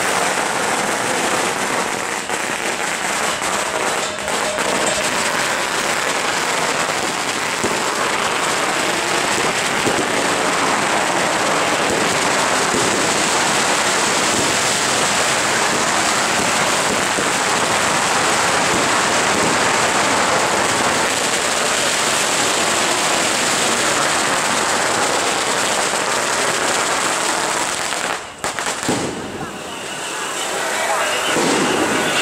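Strings of firecrackers crackling in a dense, unbroken rattle, dropping away briefly near the end.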